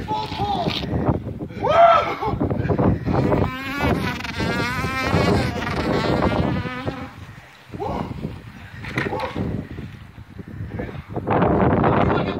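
Men's voices shouting and whooping during a strenuous exercise. In the middle, one voice holds a long, wavering, buzzing sound for about three seconds.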